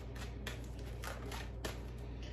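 Tarot deck being shuffled by hand, the cards slipping against each other in a few short strokes.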